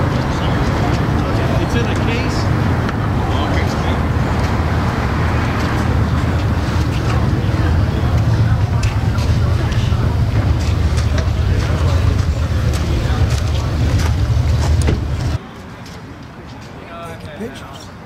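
Loud, steady low outdoor rumble with voices in the background. It cuts off suddenly near the end, leaving quieter background chatter.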